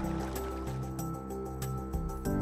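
Background music with soft, sustained chords that change every half second or so.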